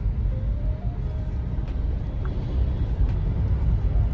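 Steady low rumble of a car driving slowly, heard from inside the cabin.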